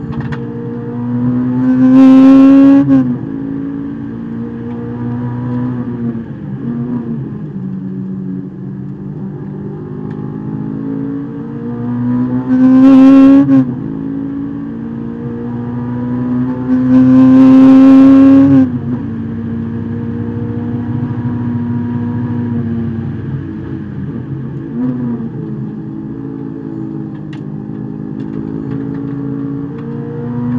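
Honda S2000's four-cylinder engine heard from inside the cabin, rising in pitch under hard acceleration three times, loudest at the top of each climb before the pitch drops sharply at a shift or lift, with a steadier lower engine note between.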